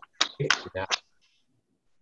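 A man's brief laugh over a video-call line: three or four short, sharp bursts of breath and voice in the first second, then the sound cuts off.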